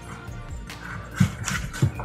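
Background music, with a few knocks of a cleaver on a wooden chopping board in the second half as shallot is being chopped.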